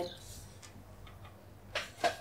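A few faint, irregular clicks and handling sounds as a small paperback book is passed from one person's hands to another's, with a short louder sound near the end.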